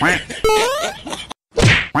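Comedy sound effects edited in: a rising whistle-like glide about half a second in, then a short, sharp whack-like hit near the end.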